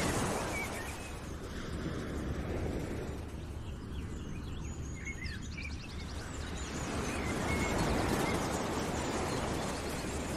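Background nature soundscape: a steady rushing noise like wind or surf that swells and eases, with faint bird chirps in the middle.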